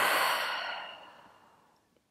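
A person's long open-mouth exhale, an unvoiced rush of breath that starts strong and fades away over about a second and a half.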